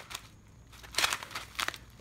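Foil-backed plastic pouch of fish food pellets crinkling and crackling as it is turned over in the hands, in a few short bursts, loudest about a second in.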